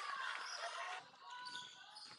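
A basketball bouncing on a sports-hall floor during play, fairly faint.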